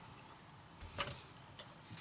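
A few faint ticks and one sharper click about a second in: a small screw and fingers handling the plastic hull parts of a model ship.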